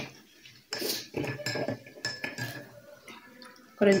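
A metal fork scraping and clinking against a stainless steel plate of noodles, a handful of clatters with a brief metallic ring.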